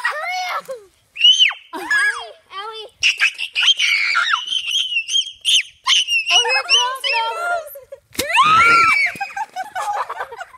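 Children shrieking and screaming in high voices as rubber bands are added around a watermelon. About eight seconds in, a single sharp crack as the watermelon bursts under the rubber bands, followed at once by a loud scream.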